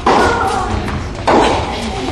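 Tennis ball struck by rackets during a rally, each hit a sharp crack that echoes in an indoor hall: one hit right at the start and another just over a second later.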